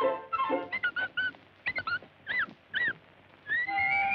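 Cartoon soundtrack: a woodwind phrase, then a string of short, high, arching squeaks from the cartoon mouse, about six of them. Near the end comes a long rising whistle-like glide.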